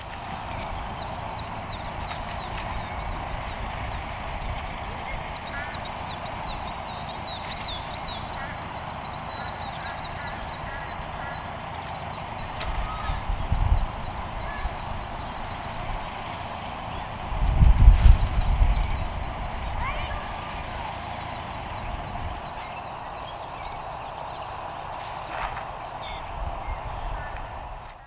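Outdoor farm ambience: birds calling over and over through the first ten seconds or so, then once more briefly, over a steady background hiss. Low rumbles come twice near the middle, the second and louder one lasting a couple of seconds.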